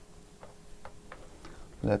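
A few faint, scattered light clicks as a display cable and its plug are picked up and handled on the bench.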